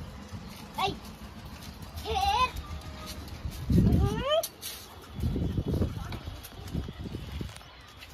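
An animal's high calls: a quavering bleat-like call about two seconds in and a rising one about four seconds in. Low rumbling noise comes and goes around them.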